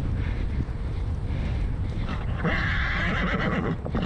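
Horse galloping on grass, its hoofbeats mixed with wind buffeting the helmet microphone. About two and a half seconds in, a steady higher-pitched sound rises over it and lasts about a second and a half.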